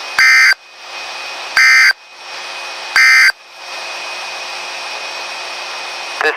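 NOAA Weather Radio SAME end-of-message code: three short, loud digital data bursts about 1.4 seconds apart, sounding like harsh buzzing screeches, over steady radio hiss. They signal the end of the tornado watch broadcast.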